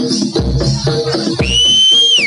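Jaranan gamelan music with a steady beat and repeating pitched notes. About one and a half seconds in, a whistle is blown hard over it, held as one shrill tone that rises slightly before it drops away.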